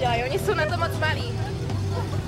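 Steady low drone of a running fire-pump engine, with high voices shouting out over it for the first second or so.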